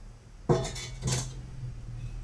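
Steel cooking pot clanking on the stovetop, two sharp metallic knocks about half a second apart with a brief ring after the first.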